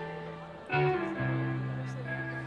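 Live acoustic guitar playing a slow song opening, single notes plucked and left to ring over held low notes, with a new note struck about three quarters of a second in; an audience recording of a concert.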